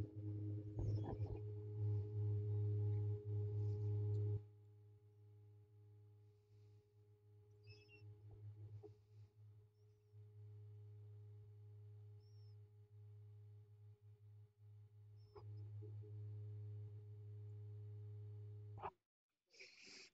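Steady low hum of a hot air rework station heating the solder joints of a phone's SIM card slot to desolder it. It is louder for the first few seconds and again near the end, with a few faint clicks.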